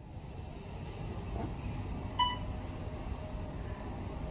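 Otis traction elevator cab travelling upward with a steady low rumble. A single short electronic beep sounds about two seconds in as the car passes the second floor.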